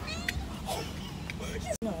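A pet-shop cat meowing, with girls laughing and talking over it.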